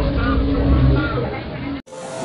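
Outdoor crowd voices with a heavy low rumble on a handheld phone's microphone as it is carried through the crowd. The sound drops out abruptly about a second and a half in, where the recording is cut to another clip.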